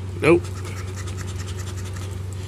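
A coin scraping the coating off a scratch-off lottery ticket in short strokes, over a steady low hum.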